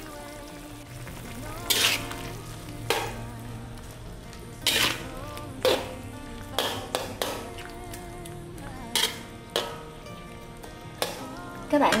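Pork belly simmering in a thin, seasoned braising liquid in a wok, stirred with a utensil that scrapes and knocks against the pan about ten times in short, sharp strokes.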